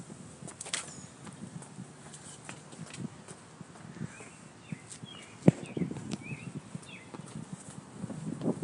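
Footsteps and phone-handling knocks while walking outdoors, with one sharp knock about five and a half seconds in. A few short bird chirps come in the second half.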